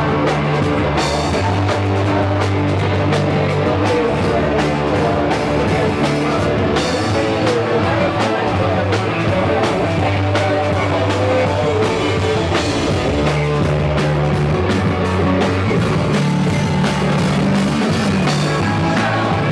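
A punk rock band playing live and loud: driving drum kit, sustained electric bass notes and electric guitar.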